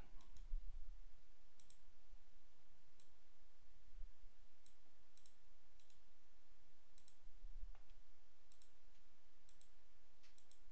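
Faint computer mouse button clicks, scattered singly and in quick pairs, over a low steady hum.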